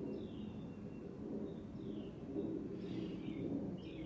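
Quiet room noise, with a few faint, brief high-pitched chirps scattered through it.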